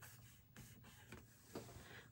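Near silence with faint rubbing as a fingertip smooths a sticker down onto a paper planner page.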